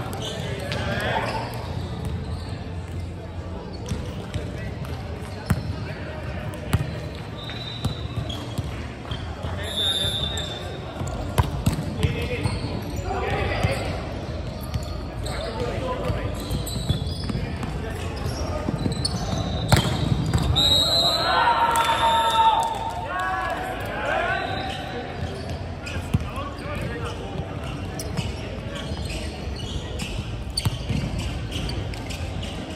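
Indoor volleyball play in a large, echoing sports hall: players calling and shouting, the ball slapped by hands in sharp smacks scattered through, and sneakers squeaking briefly on the hardwood court.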